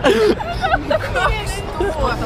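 People talking close by, over the steady babble of a crowded shopping-centre atrium.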